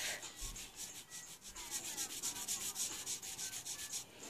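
Felt-tip marker scratching across sketchbook paper in quick, repeated back-and-forth strokes, several a second, as an area of a drawing is filled in with ink.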